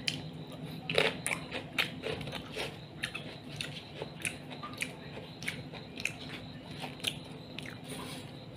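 Close-up crunching and chewing of a raw green vegetable stalk, a string of crisp crunches that are loudest between about one and two seconds in, then continue more softly.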